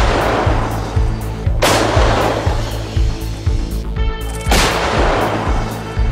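Artillery guns firing: two heavy blasts about three seconds apart, each trailing off slowly, with the tail of a third blast at the start. Background music with a steady beat runs underneath.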